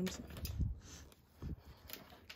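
Tarot card decks being handled on a tabletop: a few soft knocks and rustles as decks are picked up and set down, about half a second and a second and a half in, with a light tick near the end.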